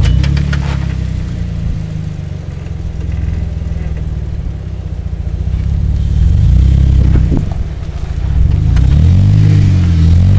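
A Jeep Wrangler Unlimited's engine pulling steadily at low speed as the Jeep crawls its big tyres up and over boulders, with a few sharp clicks at the start. The revs rise and fall several times in the last few seconds as the driver feeds throttle to climb the rock.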